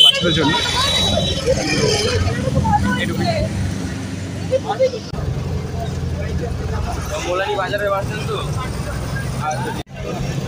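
A steady low rumble of road vehicles, from roadside traffic and then a bus engine heard from inside the cabin, with people talking over it.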